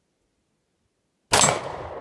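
A single .45 ACP semi-automatic pistol shot a little over a second in, sudden and loud, trailing off over the following half second.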